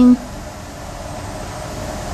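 The end of a spoken word, then steady room background noise: an even hum and hiss with no distinct events, rising very slightly.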